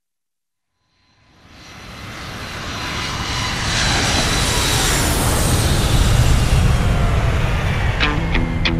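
Four-engine jet airliner flying low overhead: a jet roar that swells up out of silence over about three seconds, then holds loud, with a thin high engine whine running through it.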